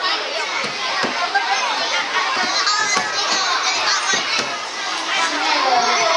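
Many young children chattering at once in a large hall: a dense, steady babble of overlapping voices.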